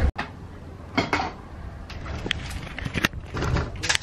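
Handling noise close to the microphone: scattered small clicks and knocks with light rustling, a sharp click about a second in and another about three seconds in.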